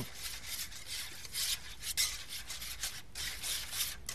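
A wire whisk beating a thick sour cream and milk mixture in a bowl, making irregular scraping and rubbing strokes, with one sharp click about two seconds in.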